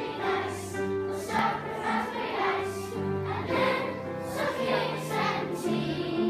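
Children's choir singing together over an instrumental accompaniment with a moving bass line.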